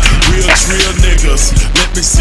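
Hip-hop track with its beat playing throughout, and a skateboard's deck and wheels clacking and rolling on concrete as a trick is done.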